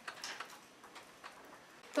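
Pens writing on paper at desks, heard as faint, irregular small clicks and taps.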